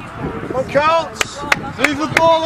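A spectator's shout about halfway through, rising then falling, followed by three sharp knocks in quick succession. Another shout starts just at the end.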